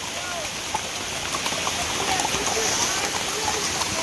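Steady rain falling on dense rainforest foliage, an even hiss.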